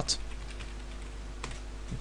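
A few computer keyboard keystrokes as a web address is typed: one right at the start and another about a second and a half in. Under them runs a steady low electrical hum.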